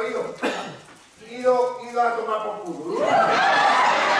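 A voice on stage speaks, with short pitched phrases, then audience applause breaks out about three seconds in and quickly grows loud.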